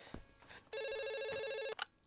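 A landline telephone ringing: one electronic warbling ring lasting about a second, starting a little under a second in.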